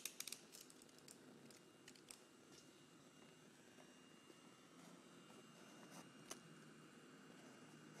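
Near silence: room tone with a few faint ticks from a craft knife cutting a slit through a paper star on a cutting mat.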